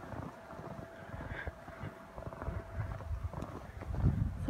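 Footsteps crunching through fresh snow, an irregular run of soft low thuds, with wind buffeting the phone's microphone.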